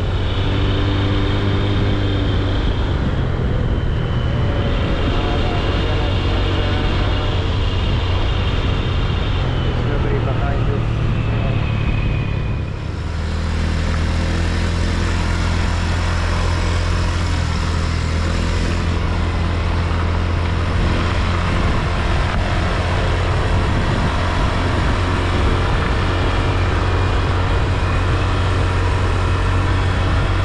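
Vehicle engine and road noise, a steady low drone with overtones; the sound changes abruptly about thirteen seconds in to a steadier, heavier drone.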